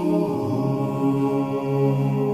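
Outro music: Georgian polyphonic choir singing held chords over a low drone, moving to a new chord about a third of a second in.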